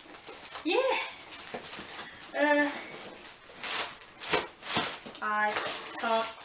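Plastic packaging rustling and crinkling as scooter bars are unwrapped by hand. Three short voiced sounds come in between.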